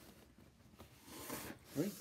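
A large cardboard box being handled and turned over: a brief, faint scratchy rubbing rustle about a second in.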